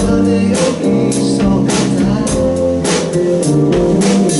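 Live band playing a song: a male voice singing over keyboard, bass guitar, acoustic and electric guitars and a drum kit, with a steady beat of about two drum hits a second.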